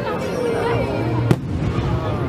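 An aerial firework shell bursting with a single sharp bang just past halfway, with music and voices going on behind it.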